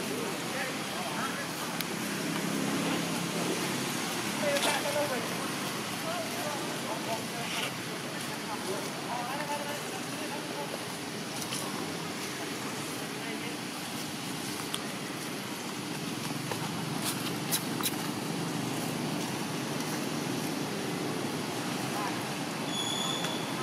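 Steady outdoor background noise with faint, distant voices of people talking and the hum of far-off traffic, plus a few light clicks later on.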